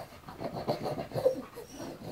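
A baby panting excitedly: quick, short, breathy voiced breaths several a second, loudest a little past the middle.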